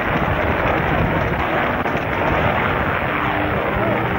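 Steady, loud wind noise buffeting an open-air camcorder microphone.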